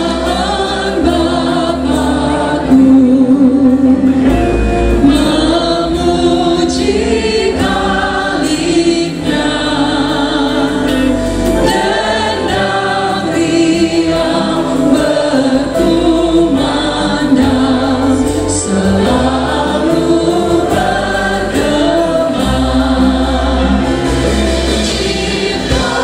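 Male and female voices singing a Christian hymn in Indonesian together through microphones. A live band backs them with guitars, hand drums and keyboard, and sustained bass notes run underneath.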